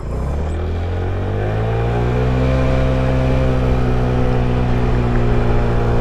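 Boom PYT Revolution 50cc scooter engine pulling away from a stop, its pitch rising over the first two seconds and then holding steady as it cruises.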